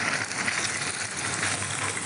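Steady rushing, hissing machine noise from mobile steam car-wash equipment running, even and unbroken.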